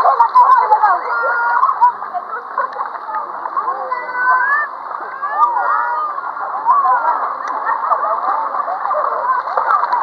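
Many children's voices calling and shouting over one another amid water splashing in a swimming pool.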